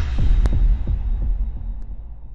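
Logo-intro sound effect: a deep bass boom with glitchy crackles and a sharp click about half a second in, dying away over the next second or so.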